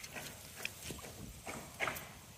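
A bamboo fish trap being shaken out over a pot: a handful of short, light taps, drips and patters as the catch of shrimp and small fish drops into the pot, the loudest near the end.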